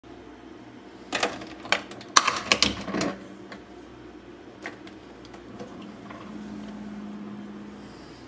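Keurig single-serve coffee maker being loaded and shut: a quick run of hard plastic clicks and clacks as the K-cup pod is seated and the lid closed. About six seconds in, a steady low hum starts as the brewer begins to run.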